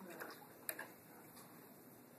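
A paintbrush knocking at the water pot: one sharp click less than a second in, with a few fainter ticks around it.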